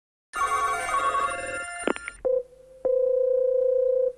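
Telephone line tones as a call is placed: about a second and a half of layered electronic tones, then a steady single-pitch ringing tone from about three seconds in, the ring heard while waiting for the other end to pick up.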